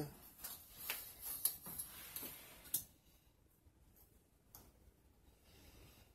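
A few faint clicks and taps over the first three seconds, then very quiet: multimeter probe tips being moved and touched onto the metal cell terminals and copper busbars of a battery bank.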